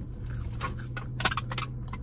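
Someone chewing McDonald's French fries, with small sharp clicks and rustles as fingers pick fries from the paper carton, the sharpest about a second in. A low steady hum runs underneath.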